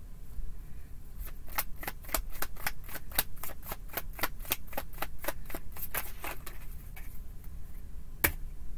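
A deck of tarot cards being shuffled by hand: a quick run of crisp card slaps, about four a second, starting about a second in and stopping a little before the end.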